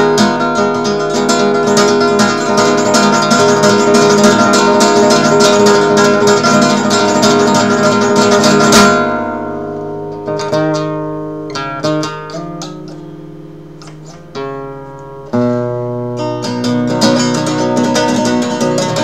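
Nylon-string classical guitar played fingerstyle in flamenco style: a fast, dense run of rapid strokes that stops suddenly about nine seconds in, then sparser notes ringing out and fading, and a loud chord at about fifteen seconds as fuller playing starts again.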